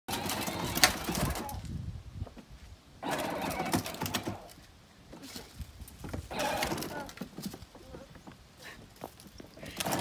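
A children's battery-powered John Deere Gator ride-on toy driving on a concrete driveway, its motor and plastic wheels running in three short spurts of a second or so each.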